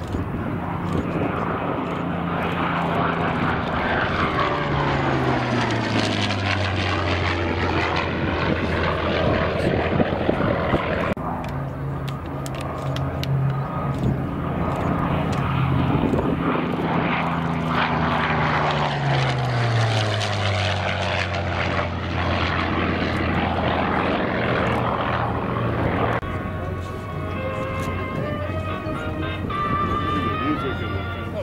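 Bell P-63 Kingcobra's Allison V-1710 V12 engine on two low flybys, each pass building up and then dropping in pitch as the fighter goes by. Near the end the engine note is quieter and steadier as it comes in on approach with the gear down.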